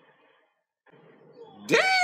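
Faint low background sound with a brief near-silent gap. About a second and a half in comes a man's loud, high-pitched exclamation that slides down in pitch.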